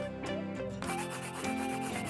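Light upbeat background music with a marker scratching and rubbing across paper as it draws, the scratching heaviest in the second second.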